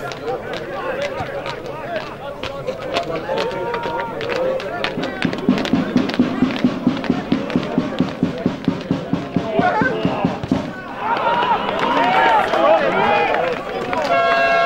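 Football supporters' drum beaten in a steady fast rhythm, about four beats a second, among spectator voices; the drumming stops about two-thirds of the way in and the crowd breaks into shouting.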